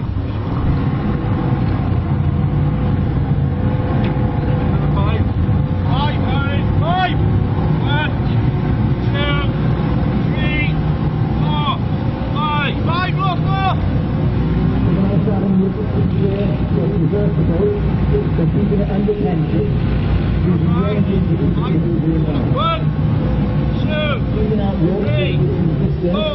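Inflatable lifeboat's outboard engine running steadily under power while the boat is held on a taut line, its propeller churning the water. Many short voices are heard over it.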